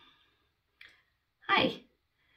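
A woman's short vocal sound, about a third of a second long, near the end, preceded by a faint click about a second in.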